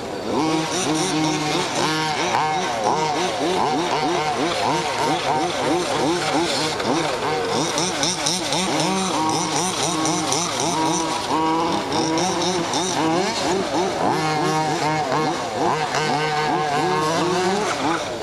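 Two-stroke petrol engines of 1/5-scale RC cars racing. Their high-pitched buzz revs up and down again and again as the cars accelerate and back off, with overlapping rises and falls from more than one engine.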